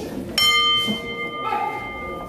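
Boxing ring bell struck about a third of a second in, a metallic clang with several ringing tones that carry on and slowly fade.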